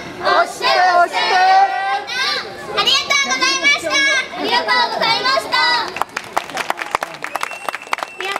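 Girls' voices shouting a short call-and-response chant in unison into microphones, in several quick phrases. From about six seconds in, scattered hand-clapping from the audience.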